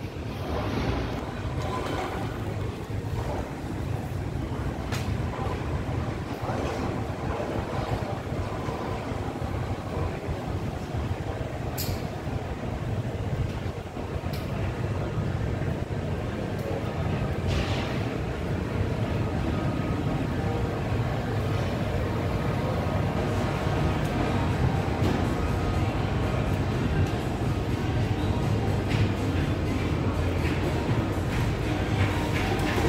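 Steady low rumble of background noise in a covered market hall, with a few sharp knocks.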